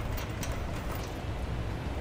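Steady low hum of the shop, with a few faint light clicks of bolts and hitch hardware being handled by hand.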